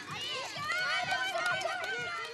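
Several young children shouting and cheering at once, their high voices overlapping throughout.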